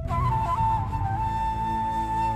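Instrumental song intro: a flute-like wind melody plays a few quick notes, then holds one long note, over a steady low backing.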